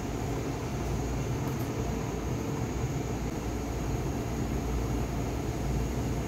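Steady rushing drone of kitchen noise while a pot of dal heats over a high gas flame, not yet boiling.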